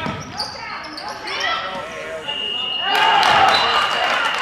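Basketball dribbling on a gym's hardwood floor with players and spectators shouting. A little past two seconds in, a referee's whistle blows one long steady blast while the crowd noise swells.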